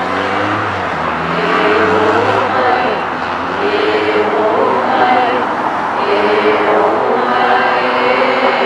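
A group of voices chanting together, with a vehicle passing on the street and adding a low engine rumble over the first couple of seconds.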